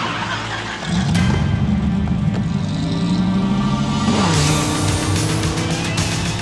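Dodge Viper RT/10's V10 engine revving hard as the car pulls away: the pitch climbs about a second in, holds, then falls about four seconds in as it shifts up, with music playing over it.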